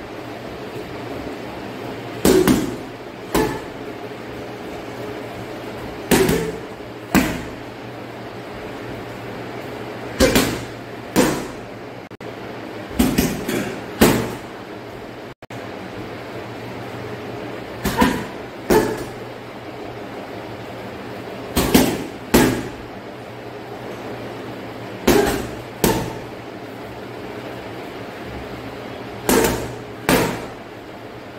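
Strikes landing on a hanging heavy punching bag, mostly in quick pairs about a second apart, a pair every three to four seconds, with one quicker flurry of three or four hits a little before the middle. A steady low hum runs underneath.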